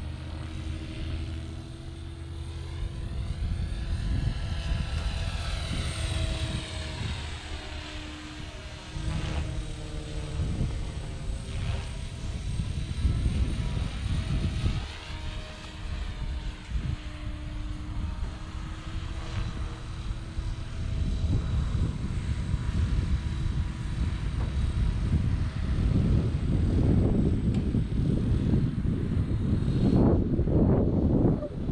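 Electric RC helicopter (Blade Fusion 480 stretched to 550-size rotors) flying overhead: its motor and rotor whine rises and falls in pitch as it manoeuvres and passes. A low, gusty rumble of wind on the microphone builds toward the end.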